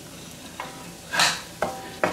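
A spatula stirring and scraping stir-fried noodles in a hot pan just pulled off the heat, with a light sizzle. There is a short clink about half a second in, a brief scrape a little after one second, and another clink near the end.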